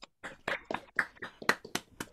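Hand clapping from participants on a video call, heard through the call's audio as a steady run of separate, sharp claps at about four a second rather than a full wash of applause.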